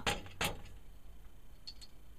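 Two sharp clicks from a snare drum's metal tension rods and hoop being handled, then a few faint ticks near the end.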